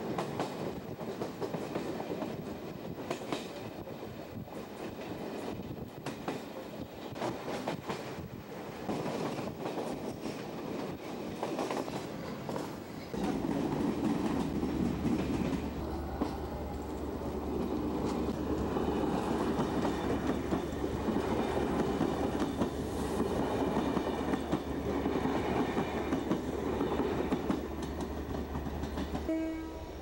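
Commuter train running on the rails, its wheels clicking over the rail joints. From about 13 seconds in, a steady low hum and a heavier rumble take over.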